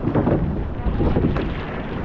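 Wind buffeting the microphone over the rush of water along a rowed surf boat's hull, a loud, uneven rumble.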